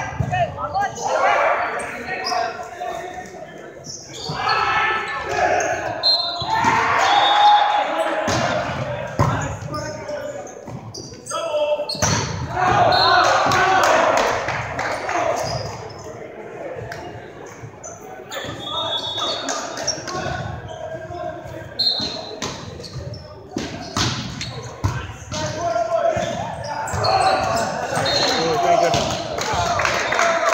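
Indoor volleyball play on a hardwood gym floor: the ball is struck and bounces again and again, sharp slaps and thuds with players' shouts and calls between them, all echoing in the large hall.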